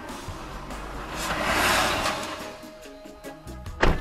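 An oncoming box truck passing the stopped car, its noise swelling to a peak about a second and a half in and then fading, under background music. A single sharp knock near the end is the loudest sound.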